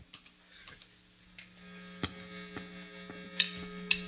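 Steady amplifier hum with scattered light clicks, the band's gear live before a song. About a second and a half in, faint held instrument notes start to ring.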